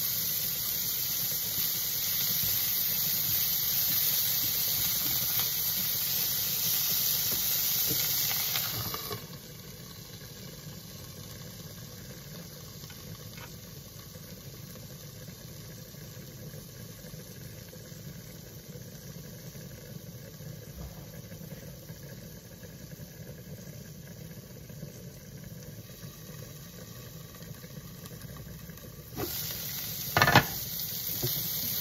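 Shredded cabbage sizzling and steaming in a frying pan, loud for the first nine seconds, then dropping suddenly to a quieter, muffled sizzle under a glass lid. Near the end the sizzle grows louder again with a clink as the lid comes off.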